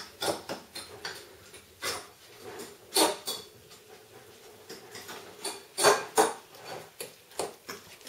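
Scattered short knocks and clinks of kitchen handling, such as a spoon against a ceramic bowl and things set down on a counter, at irregular moments with the loudest about three and six seconds in.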